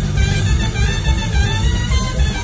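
Live band music: an amplified trumpet plays held notes over the band's pulsing bass and drums.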